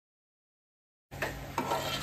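Silence, then about a second in a metal ladle starts stirring and scraping thick squid masala curry in an aluminium pot, with a few light clicks of metal on the pot.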